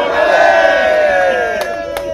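A group of people shouting a long cheer together in unison. The voices are held and slowly fall in pitch, then trail off near the end.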